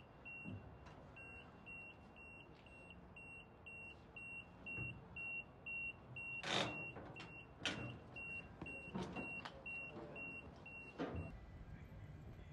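A forklift's warning beeper sounding a rapid, even train of short high beeps, stopping shortly before the end. Several loud knocks and clanks of a load being handled come in from about halfway through, the loudest one about six and a half seconds in.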